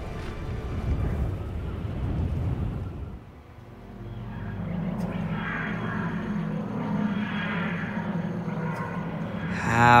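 Audio-drama sound design: a low rumbling ambience that drops away about three seconds in, followed by a steady low drone with music over it.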